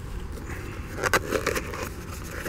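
Cardboard box and plastic bag being handled: a short cluster of rustles and clicks about a second in, over a low steady background rumble.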